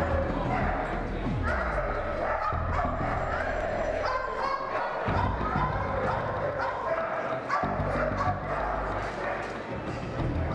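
Dogs barking and yipping, heard over background music and voices.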